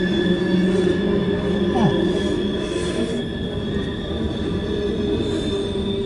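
Freight cars of a CSX mixed freight train rolling steadily past a grade crossing, a continuous rumble of wheels on rail with a steady high-pitched wheel squeal over it, typical of wheels on a curve such as the wye. Heard from inside a car stopped at the crossing.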